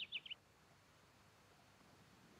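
A bird's quick run of three or four short, falling chirps, cut off about a third of a second in; then near silence with faint hiss.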